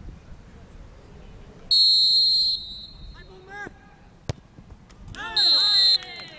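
Referee's whistle blown once, about two seconds in, to start the penalty. A couple of seconds later comes a single sharp thud of the ball being kicked. Shouts follow, with a second whistle blast near the end as the penalty goes in.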